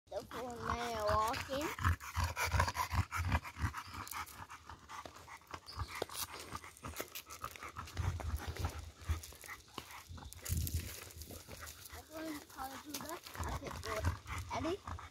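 A bully-breed dog panting hard as it pulls on a leash, with the heavy metal chain leash clinking.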